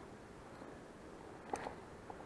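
Faint, quiet outdoor background with one brief light click about one and a half seconds in.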